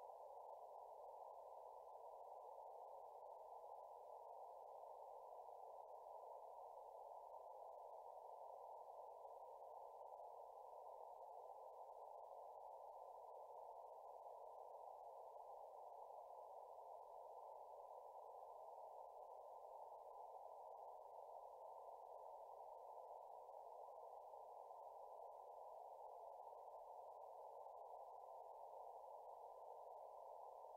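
Faint, steady hiss of band noise from the Elecraft K3S transceiver's receiver, left turned up, heard through its narrow CW filter with no signals on the band.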